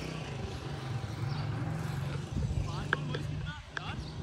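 Distant voices of people over a steady low rumble, with a few short high chirps near the end.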